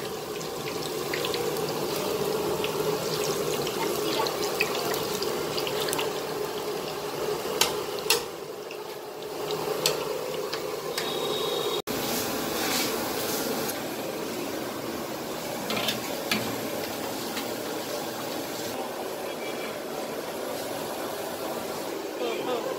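Bundi (gram-flour batter droplets) deep-frying in hot oil in an iron kadai, with a steady sizzle and occasional clinks of a metal perforated ladle against the pan. The sizzle dips briefly near the middle and breaks off abruptly at a cut, where a similar steady hiss resumes.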